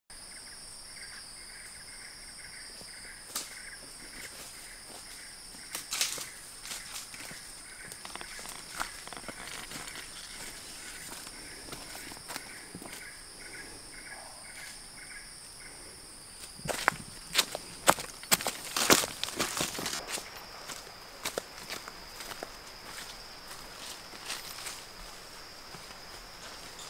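Footsteps crunching and snapping through dry leaf litter and twigs on a forest floor, loudest in a burst about two-thirds of the way through. Under them, forest insects keep up a steady high-pitched buzz, with a regular chirping through the first half.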